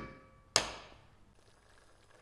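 A spoon knocking against a stainless-steel pot: a short metallic ring dies away at the start, then a sharper clack about half a second in fades out, leaving it fairly quiet.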